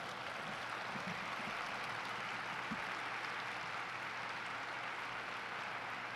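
Audience applauding steadily at the close of a talk, heard fairly quietly in the hall.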